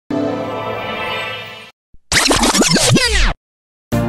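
Electronic logo-intro sting. A sustained synth chord fades out after about a second and a half. After a short gap and a tiny click comes about a second of loud, repeated swooping effects that fall in pitch and cut off sharply. New background music starts right at the end.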